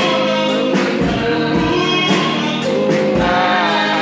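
Gospel worship song: several women's voices singing together into microphones over instrumental backing with a steady beat.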